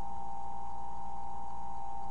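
A steady high-pitched electrical whine with a low hum under it and background hiss; nothing else happens.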